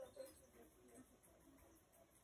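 Near silence: faint room tone with a few faint, indistinct sounds.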